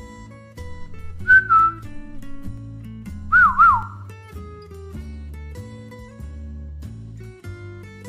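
A person whistling twice: a short whistle about a second in, then a longer one about three seconds in that wavers up and down and falls in pitch, over light background music with acoustic guitar.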